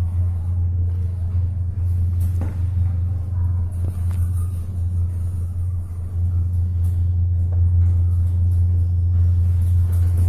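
Hyundai freight elevator car travelling upward: a steady low rumble inside the cab, with a few faint clicks.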